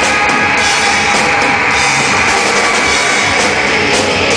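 A live rock band playing loud and steady, with a full drum kit, guitars and bass guitar, heard from the crowd.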